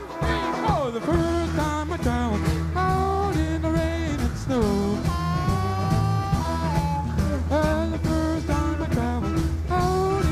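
Live blues-rock band playing a boogie: a steady, droning bass line under electric guitar, with a high lead line that bends and glides in pitch from sung vocals.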